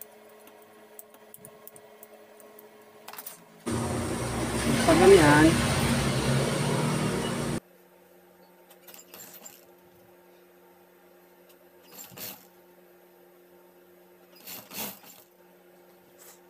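Industrial lockstitch sewing machine running for about four seconds, starting and stopping abruptly as it stitches bias binding onto a fabric edge. A faint steady motor hum sits under it, and there are a few soft knocks from handling the fabric near the end.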